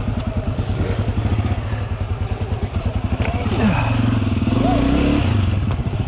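Dirt bike engine running at low revs with a steady chugging beat as it rolls down a steep trail, then the revs pick up and rise briefly about four seconds in.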